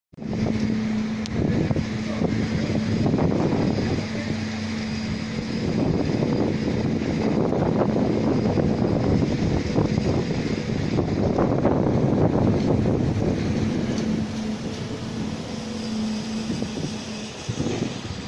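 Strong wind buffeting the microphone in uneven gusts, over a steady low machine hum from the building site.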